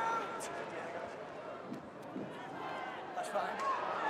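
Rugby league stadium crowd: a steady murmur of many voices with scattered shouts, growing louder near the end.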